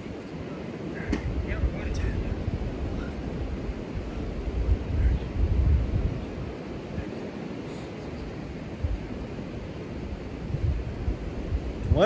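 Wind buffeting the microphone over the steady wash of surf, with a stronger gust about five seconds in.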